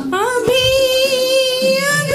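A woman singing live into a microphone: her voice slides up in the first half second and then holds one long, steady note.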